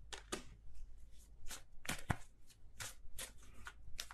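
A tarot deck being shuffled by hand: a run of soft, quick card flicks, about three a second, irregularly spaced.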